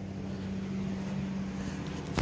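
A steady low hum with a constant pitch over a background of even noise.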